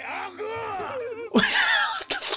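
Speech only: a character's voice from the anime shouting a line, mixed with a man laughing, louder from about two-thirds of the way in.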